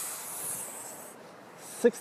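A soft, high hissing rub for about a second, then fading: handling noise of a handheld phone's microphone brushing against a hand or clothing.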